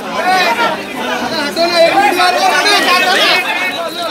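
Several voices talking and calling out over one another, loud and close.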